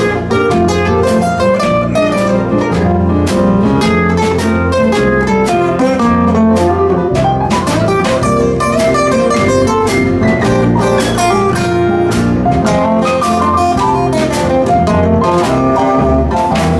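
Acoustic guitars playing an instrumental passage of a blues song: a steady run of picked notes over a low bass line.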